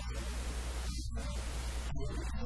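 Steady low electrical hum under a constant hiss, a noisy recording in which the hum and hiss dominate.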